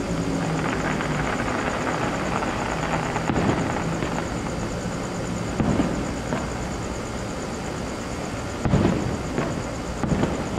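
Distant fireworks shells bursting: four dull booms spread through, the loudest near the end, over a steady background rumble.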